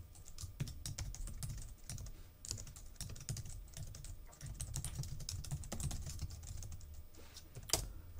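Typing on a computer keyboard: a steady run of irregular keystrokes, with one sharper key click near the end.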